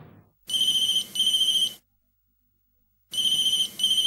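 Mobile phone ringing with a high, steady trilling ring tone: two double rings, the second about a second and a half after the first.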